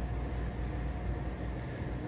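Steady background hum and hiss of room noise, with no distinct event; the touchpad button press makes no audible click.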